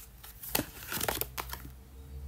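Tarot cards handled on a wooden table: a few short clicks and slides as one card is laid down and the next is drawn from the deck and turned up.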